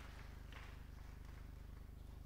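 Quiet room tone with a steady low hum, such as a sound system's electrical hum, and no distinct events.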